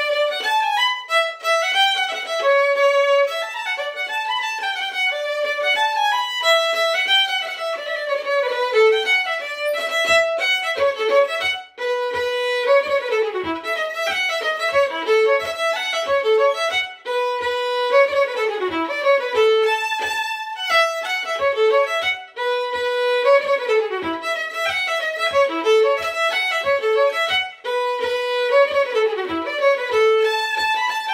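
Solo Irish traditional fiddle playing a tune in quick running notes. About ten seconds in, a steady low tapping joins in time with the tune.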